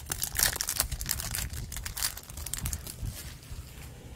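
Foil wrapper of a Topps Chrome baseball card pack crinkling as it is torn open and the cards are pulled out: irregular crackles that thin out toward the end.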